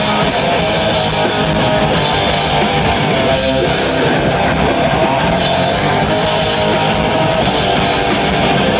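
Live heavy rock band playing loudly: distorted electric guitars and a drum kit.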